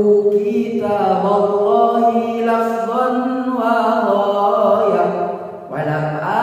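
A young man's voice chanting Arabic in a slow, melodic style, holding long notes that glide and waver in pitch, with a short break about five seconds in.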